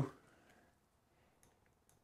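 Near silence, with a few faint small clicks from handling a screw at a metal drawer-slide bracket.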